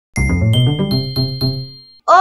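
A short chiming jingle: a few quick bell-like notes ring out over a low tune, starting a moment in and fading away by the end.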